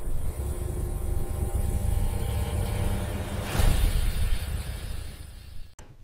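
Cinematic logo sting: a deep, steady rumble with faint high held tones, a whoosh swelling about three and a half seconds in, then fading out shortly before the end.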